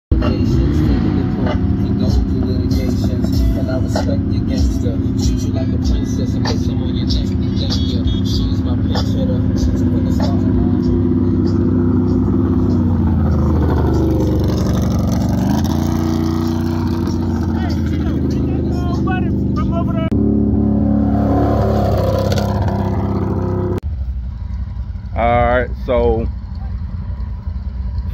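Off-road vehicle engines running steadily, dipping in pitch and rising again about halfway through, mixed with music and voices.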